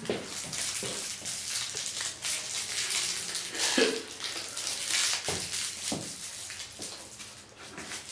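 Rustling handling noise close to the microphone, with a few soft knocks, as a fabric sleeve brushes against it.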